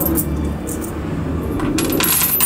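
Loose US coins (copper pennies, dimes and quarters) clinking as a hand lets them fall onto a pile of coins on a wooden tabletop. There is a clink right at the start and a quick run of clinks near the end.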